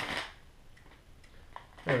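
Plastic packaging bag rustling briefly as it is pulled open, then a few faint ticks of handling as the cable inside is drawn out.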